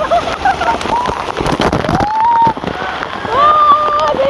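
A large volume of water from a water-park tipping bucket crashing down and splashing, a dense rushing spatter like heavy rain. Voices shout over it, with one long held shout near the end.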